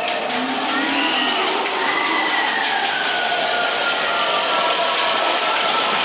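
Matterhorn Bobsleds sled climbing the chain lift inside the dark mountain: a steady mechanical rumble with rapid, even clacking, about four to five a second, and long high squeals that glide slowly down in pitch.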